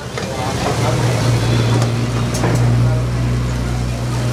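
A steady low motor hum that sets in about a second in, under kitchen noise with a few sharp metallic clicks and indistinct background voices.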